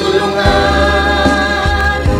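A church choir singing a Tagalog praise song in held, sustained chords over a steady low bass accompaniment.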